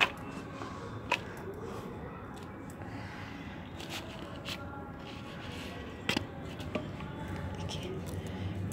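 Hands settling potting soil around a rose plant in a terracotta pot, with more soil added, and a few sharp knocks or taps: the loudest right at the start, about a second in and about six seconds in. The tapping settles the soil without pressing it, so the roots are not damaged.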